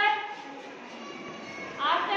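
Voices calling out twice, each call short and high-pitched, rising and then held, about two seconds apart.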